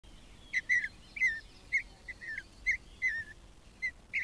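A bird calling in a run of about nine short, high chirps, several of them sliding down in pitch.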